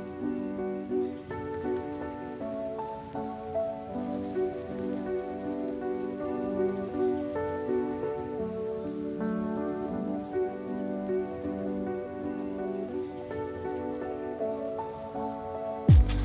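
Background music: soft, sustained notes and chords that move to new pitches about once a second.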